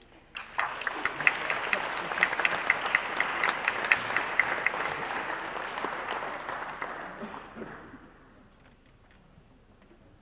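Applause from a crowd of people clapping, starting abruptly about half a second in, holding steady for several seconds and dying away by about eight seconds in.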